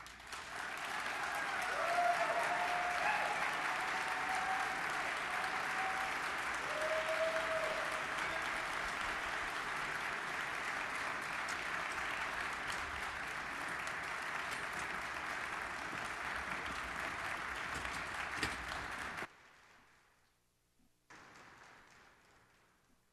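Large audience applauding, with a few cheering calls rising over the clapping in the first several seconds. The applause cuts off abruptly a few seconds before the end.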